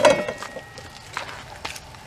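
Water at a rolling boil in a large aluminium stock pot over a propane burner: a steady bubbling and burner noise with a few faint pops. A brief louder sound comes right at the start.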